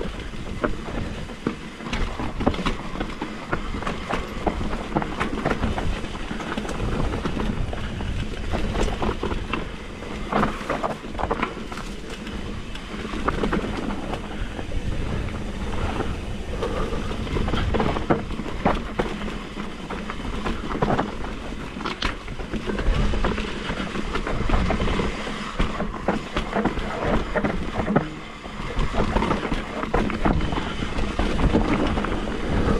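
Mountain bike rolling fast down a dirt singletrack: continuous tyre and ground rumble with frequent rattles and knocks from the bike over bumps, roots and rocks.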